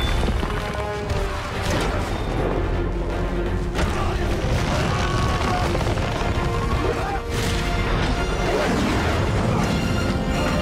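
Action-film soundtrack: score music under heavy metallic crashes and booms of a robot fight, with strong impacts about two, four and seven seconds in.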